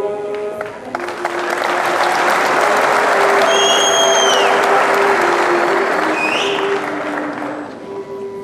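Audience applauding over background music. The clapping swells to its loudest in the middle and fades toward the end, with a few shrill whistles from the crowd in the middle.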